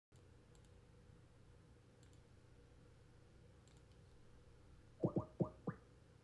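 Near silence with a few faint clicks, then, about five seconds in, four quick rising electronic chirps in a row.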